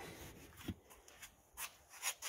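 Nearly quiet, with a few faint clicks and soft rubbing from handling.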